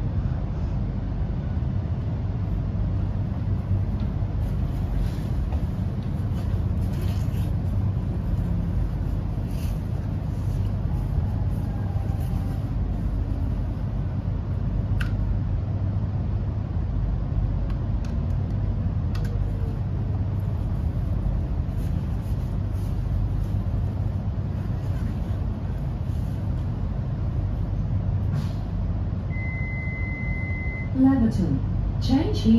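Cabin sound of an X'Trapolis electric train slowing into a station and coming to a stop: a steady low running rumble with a faint motor whine that falls in pitch. There is a single sharp click about halfway, and a steady high beep starts just before the end.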